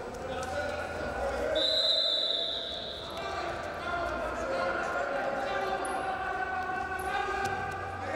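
Greco-Roman wrestlers grappling on the mat, with thuds of feet and bodies on the mat and voices calling out. About one and a half seconds in, a high squeal lasts over a second.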